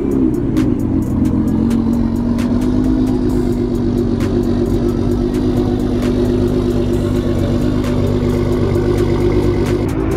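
Nissan GT-R R35's twin-turbo V6 revving up in the first second, then held at high, steady revs while its tyres spin and smoke.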